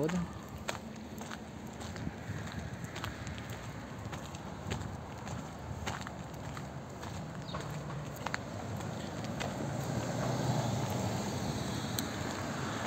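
Footsteps on a wet, slushy pavement, a sharp step every half second to a second, over steady low street traffic noise. A car engine grows louder near the end.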